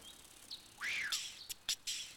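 Cartoon sound effects: a short squeaky chirp that rises and falls about a second in, followed by a run of quick, sharp crackles and clicks.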